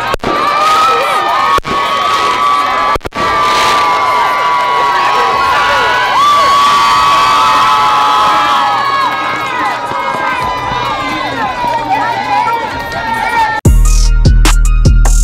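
Crowd cheering with children shouting, loud and sustained, broken by a few very short dropouts in the first few seconds. Heavy-bass hip hop music cuts in just before the end.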